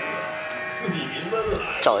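A steady buzzing drone made of several level tones, which fades out about a second in, then a person's voice near the end.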